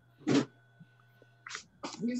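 A person sneezing once, short and loud, followed by two quieter breaths about a second and a half later.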